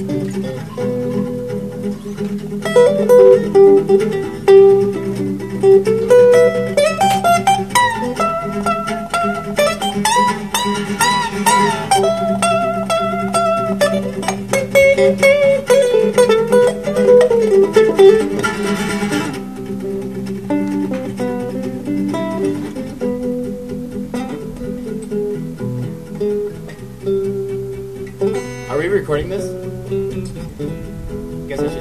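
Two acoustic guitars playing live: one keeps up steady chords while a lead acoustic guitar plays a solo line with bent notes. The solo is busiest through the first two-thirds, then drops back under the chords.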